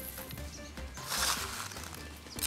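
Small white decorative gravel poured from a plastic scoop into a glass terrarium: a brief pouring hiss about a second in, over background music.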